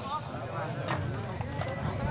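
Background chatter of onlookers' voices, with one short, sharp knock about a second in.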